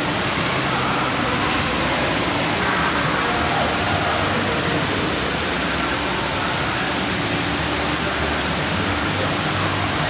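Steady rushing and splashing of water from spray fountains pouring into a shallow splash pool, loud and unbroken.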